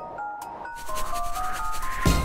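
A hand rubbing over glitter-coated paper, a rubbing noise that grows louder through the second half, over light background music with a simple melody.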